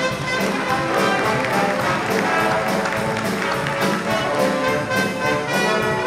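Dixieland combo playing live: trumpet, clarinet, trombone and saxophone over tuba, banjo and drums, with a steady beat.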